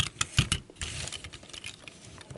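Plastic Transformers toy cars in jeep mode clicking and knocking as they are handled and set down on a table, with one low thump in the first half-second, then a faint rustle of handling.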